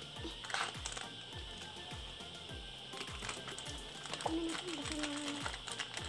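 Background music with a steady low beat, about two beats a second, and a short melody near the end. Over it are a few sharp clicks and crinkles from a small plastic packet being handled and opened.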